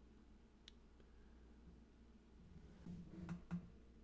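Near silence: quiet room tone with a faint click about a second in and a few soft, low knocks near the end.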